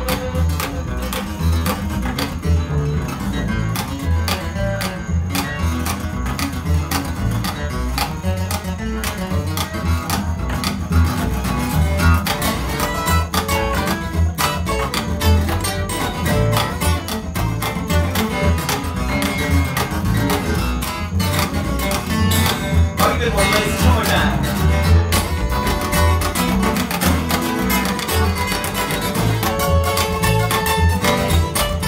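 Acoustic guitar taking an instrumental solo break, picked lead lines over a plucked upright bass in a country shuffle.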